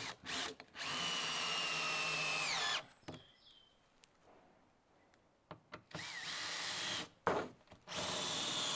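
Cordless drill driving screws through an OSB floor sheet. It runs in two bursts of a second or two, with short trigger blips between them. At the end of the first run the motor's whine drops in pitch as the screw drives home.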